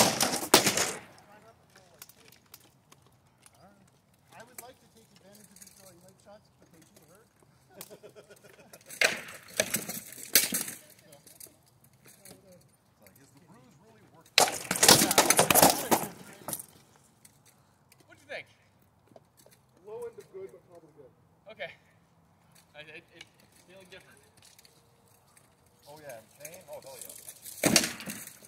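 Rattan swords striking shields and armour in flurries of rapid sharp cracks and clacks: one in the first second, another around nine to ten seconds in, the loudest for about two seconds around the middle, and a last one at the very end, with faint scattered knocks between.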